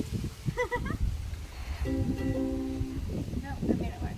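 Ukulele strummed once, a chord ringing for about a second in the middle, as it is being checked and tuned.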